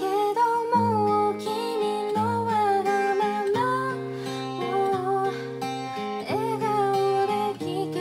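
A woman singing a ballad in Japanese to her own strummed Martin acoustic guitar, capoed, with chords changing every second or so under the sung melody.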